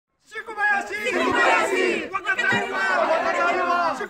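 A group of people shouting a chant together, many voices overlapping. It starts a moment in after a brief silence.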